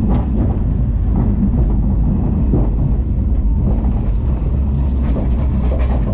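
Arrow Dynamics steel roller coaster train running along its track, a steady low rumble of the wheels with scattered clacks.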